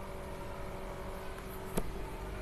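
Steady low hum and hiss of room and microphone noise, with a single computer keyboard keystroke clicking near the end.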